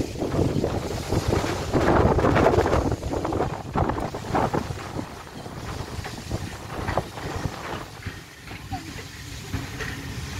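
Passenger coaches rolling slowly past, their wheels clattering and knocking on the rails, loudest in the first few seconds and then easing off, with wind on the microphone.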